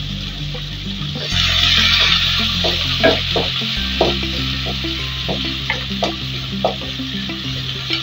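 Chopped onion sizzling in hot mustard oil in a metal kadai; the sizzle grows louder a little over a second in. A spatula stirs and scrapes it around the pan in a run of short strokes.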